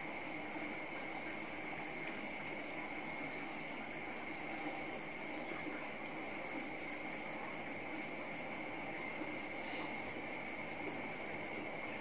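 Steady background hiss with a constant high-pitched whine running under it, unchanging throughout.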